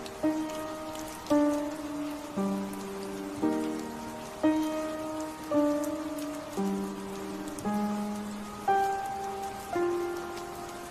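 Slow instrumental piano music, a chord struck about once a second and left to fade, over steady rain ambience with scattered raindrop ticks.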